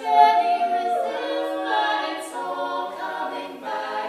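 Women's barbershop quartet singing a cappella in four-part close harmony, with tenor, lead, baritone and bass voices. The sung chords are held and change about once a second, with a loud entry just after the start.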